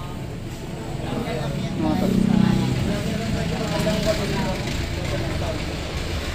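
Indistinct voices of people talking nearby, over a low rumble that swells about two seconds in.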